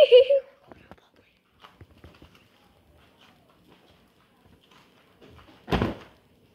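Quiet faint tapping and rustling, then a single short, loud thump near the end.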